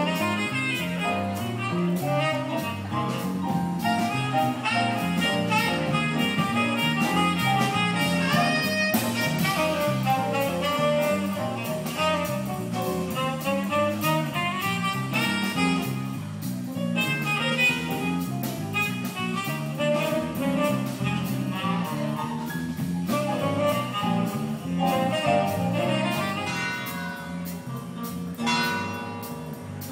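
Live jazz band playing, a melodic lead line over a low moving bass and a steady beat.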